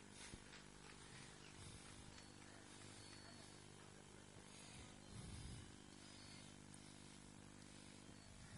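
Near silence: a faint steady hum, with a brief soft low rumble about five seconds in.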